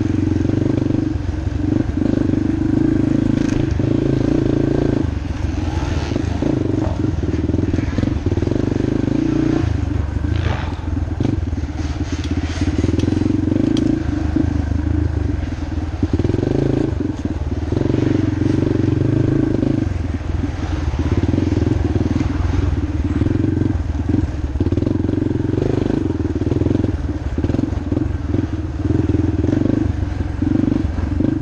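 Yamaha TT-R230 dirt bike's single-cylinder four-stroke engine running under load as it is ridden, the throttle opening and closing every few seconds. There are occasional short clatters.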